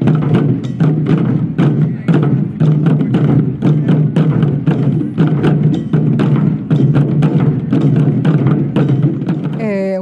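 Taiko drum ensemble playing: several drummers striking the drums with wooden bachi sticks in a fast, even rhythm, the drums ringing low under the strokes.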